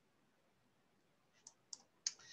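Near silence, broken near the end by two faint, short clicks about a quarter of a second apart.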